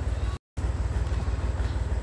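Low, steady engine rumble of an idling vehicle, cut by a brief gap of total silence just under half a second in.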